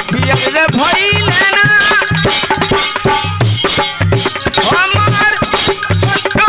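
Live Bhojpuri folk song: a man singing over harmonium, with regular dholak drum strokes and wooden kartal clappers clicking in time.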